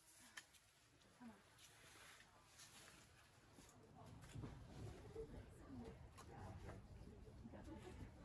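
Near silence, with faint, indistinct voices in the second half and a few small taps.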